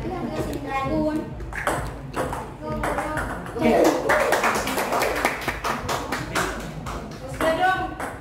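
Table tennis ball clicking off paddles and the table amid voices, then spectators cheering and clapping loudly from about three and a half seconds in, as a point is won.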